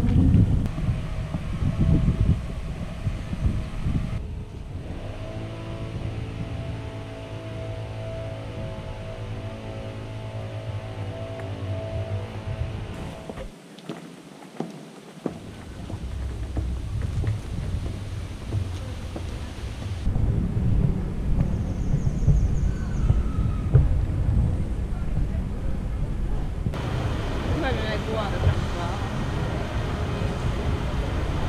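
Wind rumbling on a small action camera's microphone over outdoor ambience, broken by several cuts. For several seconds in the middle a steady low hum with even overtones runs underneath, and there is a brief near-quiet gap.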